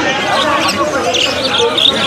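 A cageful of budgerigars chattering and warbling together: a dense, continuous jumble of short, twittering pitched sounds with quick high chirps over it.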